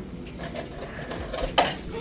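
Kitchen cupboard being rummaged in, with a short knock about a second and a half in over faint room noise.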